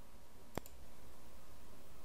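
A single computer-mouse click about half a second in, a sharp press followed at once by a softer release, clicking the play button to start playback. After it there is a faint steady hiss.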